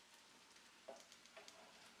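Near silence: room tone, with a few faint light ticks from about a second in.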